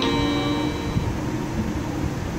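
A single held musical note fades away over about the first second, leaving a low, steady background rumble.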